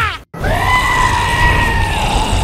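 One long, high-pitched human scream starts about half a second in, right after a brief cut to silence, and is held for about a second and a half. Background music with a low beat runs under it.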